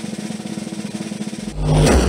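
Broadcast sound effect of a fast snare drum roll building suspense for a prize reveal, breaking about one and a half seconds in into a louder reveal hit with a deep boom.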